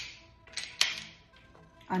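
The easy-to-rack slide of a Smith & Wesson Equalizer TS pistol is worked by hand. It gives short metallic clicks, with the loudest, sharpest clack just under a second in, as the slide cycles.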